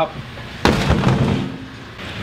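A sudden heavy thump about two-thirds of a second in, dying away over about a second.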